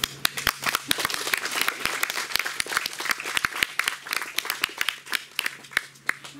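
A small audience applauding, with one person clapping close by, in dense irregular claps that thin out and fade near the end.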